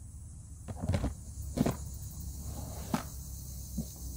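Plastic lid of a Moultrie deer feeder's hopper being set and fitted on: a handful of short, scattered knocks and clicks, the loudest about a second and a half in.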